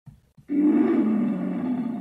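A loud, drawn-out roar that starts about half a second in, holds for about a second and a half and then tails off.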